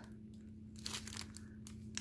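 Soft crinkling of a clear plastic bag of sealed diamond-painting drill packets as it is turned over in the hands, with a few scattered crackles.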